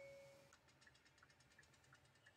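Near silence: the last note of soft chime-like music fades away in the first half second, then faint rapid ticking, about ten ticks a second.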